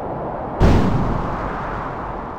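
A deep cinematic boom sound effect hits suddenly about half a second in and dies away slowly, after a low rumble.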